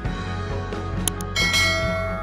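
Background music, then a bright bell chime about one and a half seconds in that rings on and slowly fades: a notification-bell sound effect.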